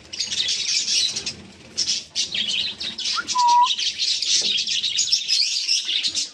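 A flock of small caged birds chirping continuously, a dense high-pitched chatter with a brief lull about two seconds in. One clear short whistle stands out about three and a half seconds in.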